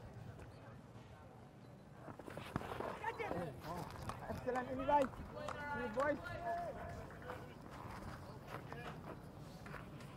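Cricket fielders' calls and shouts of encouragement, mostly between about two and seven seconds in, over faint open-air ground ambience.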